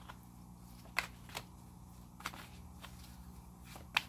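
A deck of oracle cards being shuffled by hand: soft card handling with four short sharp clicks spread through, over a faint low steady hum.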